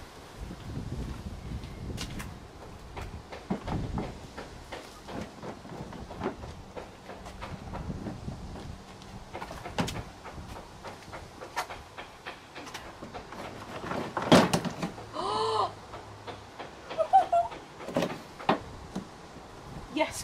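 Plastic front bumper cover of a Honda Civic Type R being tugged and worked loose by hand: irregular clicks, knocks and rattles of the plastic against its fixings, with a louder cluster of knocks and a short pitched sound about three quarters of the way through.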